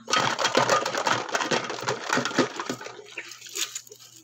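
Plastic baby-bottle parts clattering and knocking together as a hand rummages through them in a stainless steel basin of soapy water, with water sloshing. A dense, rapid clatter for about the first three seconds, then a few scattered knocks.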